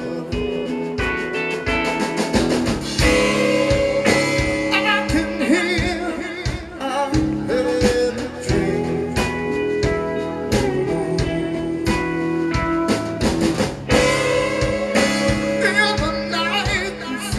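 Live blues band playing: electric guitar over a steady drum-kit beat and timbale percussion, with a voice singing.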